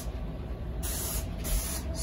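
Liquid insecticide hissing from a hand-held sprayer wand in short bursts, two of them in the second half, over a low rumble.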